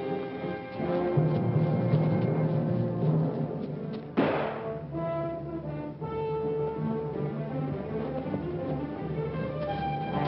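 Orchestral film score with brass and timpani, held notes changing every second or so, and a sharp crash about four seconds in.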